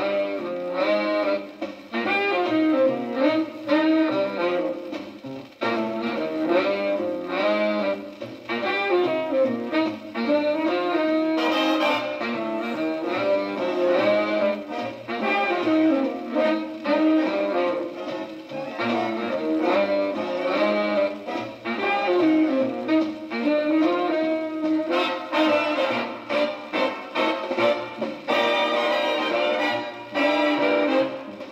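Instrumental break of a 1955 78 rpm shellac dance-band record playing on a turntable, the band carrying on with no vocal between the sung verses.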